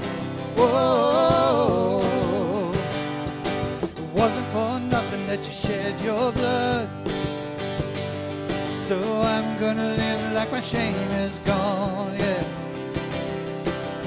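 Live worship music: strummed acoustic guitar and a regular hand-drum beat, with singing voices coming in and out in short phrases.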